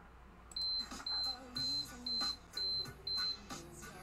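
An electronic beeper sounding six short, high-pitched beeps, about two a second, like a timer or alarm going off.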